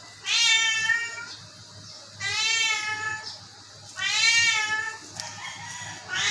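A sick long-haired Persian cat meowing three times, each meow about a second long and rising and falling in pitch.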